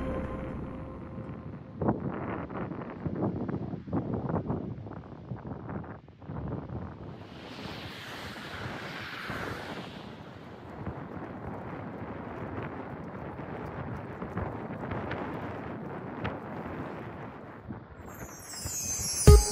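Wind buffeting the microphone over the wash of small waves on a sandy beach, in uneven gusts. A car passes on the coastal road, its hiss swelling and fading between about seven and ten seconds in.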